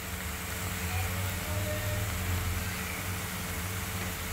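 Greens, peanuts and garlic frying in a steel kadhai on a gas stove: a steady low hum under an even sizzling hiss.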